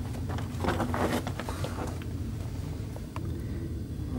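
Movement and camera-handling noise in a chalk tunnel: a steady low rumble with scattered small clicks and knocks.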